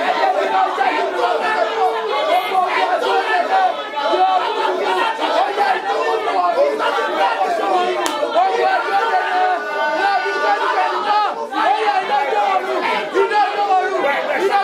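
Congregation praying aloud all at once: many voices overlapping in a steady, unintelligible babble.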